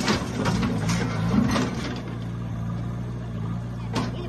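JCB backhoe loader's diesel engine running steadily at low revs, with several sharp knocks in the first two seconds.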